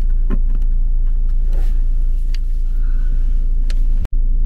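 Steady low hum of a car engine idling, heard inside the cabin, with a few sharp clicks and a rustle from handling the plastic phone mount.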